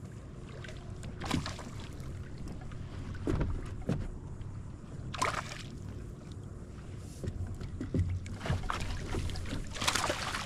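A hooked fish being played and netted beside a small plastic jon boat: a low steady hum of water against the hull, broken by several short knocks and splashes, which come thickest near the end as the fish reaches the net.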